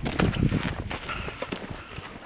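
Footsteps crunching on a dirt trail, an uneven run of short steps, with wind buffeting the microphone.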